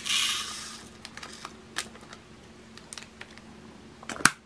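Resin diamond-painting drills poured from a small plastic bag into a plastic bead container: a short rattling hiss at the start, then scattered light plastic clicks as the container is handled.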